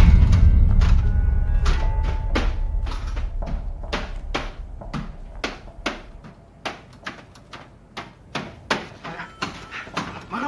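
Horror film score: a sudden deep boom at the start that dies away over several seconds, with sharp, irregular clicks and knocks sounding throughout.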